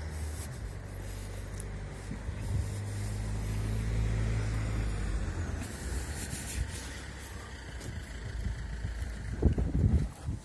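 Low engine hum of an unseen motor vehicle, growing louder over the first few seconds and then fading away. A few thumps come near the end.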